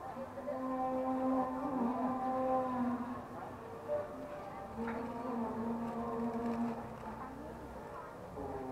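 A voice holding long sung notes, two of them, each lasting about two to three seconds, over faint street background.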